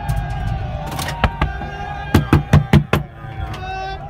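People banging on the body of a TV news live truck, heard from inside it: about eight hard knocks in two quick runs, over a crowd of shouting voices.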